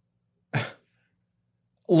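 A man clears his throat once, briefly, about half a second in.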